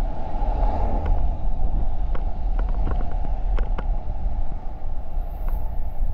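Steady wind and road rumble on the microphone of a motor scooter riding through city traffic, with a few light clicks scattered through it.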